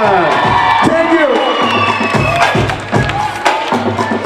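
Audience cheering and shouting in a hall, over music with a beat from the sound system.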